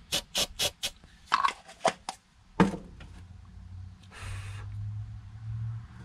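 Hand-handling noises: a quick run of sharp clicks and taps, with a louder knock near the middle. A brief hiss comes about four seconds in, and a low steady hum runs from there on.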